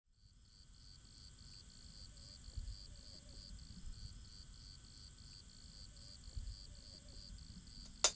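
Field insects chirping: a steady high-pitched buzz with a short chirp repeating about three times a second, over a low rumble of wind. The sound fades in at the start.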